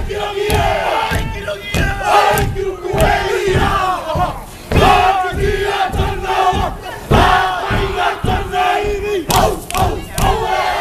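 Male dancers in a Polynesian war dance shouting a chant together in loud unison cries, over heavy drumbeats.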